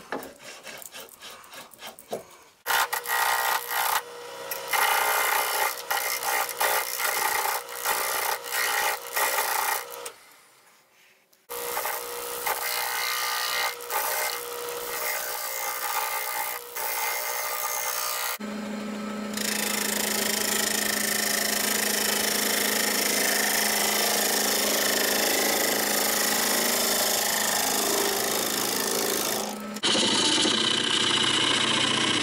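A turning tool cutting a freshly dug, wet sassafras root spinning on a wood lathe: a loud, rough scraping that comes and goes as the tool bites into the uneven root. The sound drops almost silent for about a second near the middle, and from a little past halfway a steady low hum runs under a more even cut.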